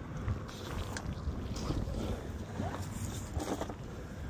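Wind buffeting the microphone as a steady low rumble, with a few faint light knocks.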